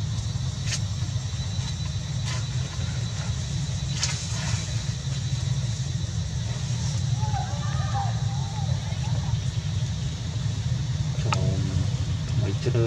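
A steady low rumble, such as a running engine or wind on the microphone, with a few sharp clicks in the first four seconds and a voice starting near the end.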